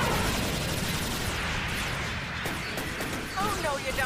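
Cartoon battle sound effects from an 1980s mecha anime: continuous weapons fire and explosions in a dense, steady din, with a brief warbling tone near the end.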